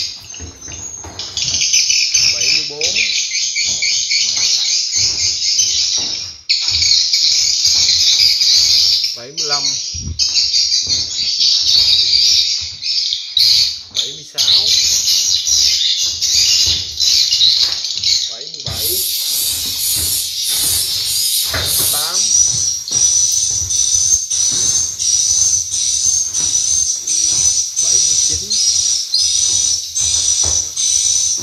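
Loud, continuous swiftlet chirping and twittering, the lure calls played through a swiftlet house's loudspeakers. About two-thirds of the way through, the pattern changes to a thin, wavering whistle-like tone repeating in quick regular pulses.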